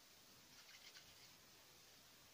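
Near silence, with a few faint soft ticks a little before the middle from hands kneading plasticine.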